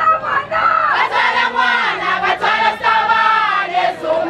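A large crowd singing and chanting together, many voices at once with held, rising and falling notes.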